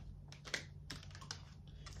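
Faint, irregular light clicks and taps, a few a second, from tarot cards being handled and turned over, with a low steady hum underneath.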